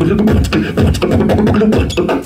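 Live beatboxing into a handheld microphone, amplified through a PA: a steady vocal beat of deep, bass-heavy kick sounds about three a second with sharp hi-hat-like clicks between them.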